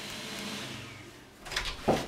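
Steady room hiss, then clothes rustling as a shirt and a vest are handled, with two short scuffs about a second and a half in, the second one louder.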